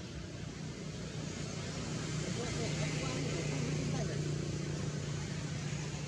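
A low, steady engine hum that grows louder through the middle and eases off near the end, with faint voices in the background.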